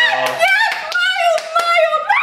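A few quick hand claps with excited cheering voices.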